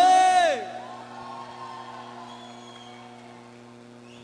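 A male singer's held note that slides down and ends about half a second in, followed by a quieter sustained chord from the band held steady underneath.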